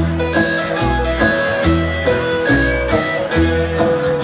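Live country band playing an instrumental break: a lead electric guitar line of held and bending notes over a walking bass and a steady drum beat.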